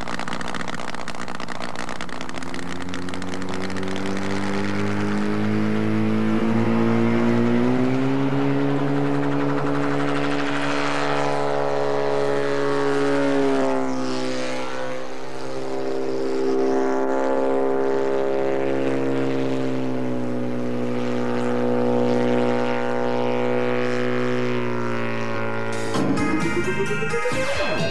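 Light single-seat autogyro's engine and pusher propeller running: the engine note climbs in pitch over the first several seconds as it opens up for take-off, then holds fairly steady with slight rises and falls as it flies.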